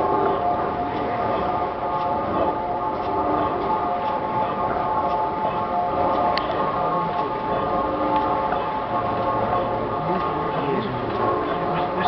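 Half-horsepower side-crank Crossley slide-valve gas engine running steadily as it warms up, with scattered light clicks over a steady hum.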